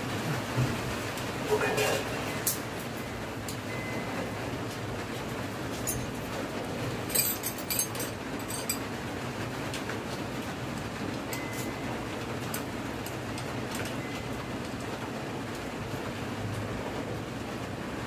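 Light metallic clicks and taps of nuts and a small wrench on a scooter steering-damper bracket as the bolts are fitted and tightened, with a quick run of several clicks about halfway through, over a steady background hiss.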